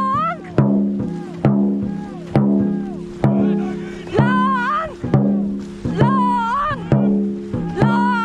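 Background music: a melody with sliding pitch over a held chord and a steady beat of a little over one strike a second.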